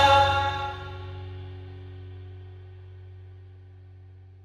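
Pop-punk band's final chord ringing out on electric guitars and bass: the full sound drops away over about the first second, leaving a low sustained tone that slowly fades.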